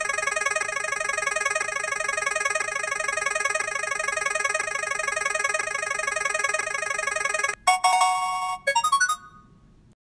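An electronic sound-effect jingle of rapidly repeating bright tones, like a ringtone, suggesting a random-pick spin. It cuts off about seven and a half seconds in, and a few short chimes follow that fade away as the pick lands.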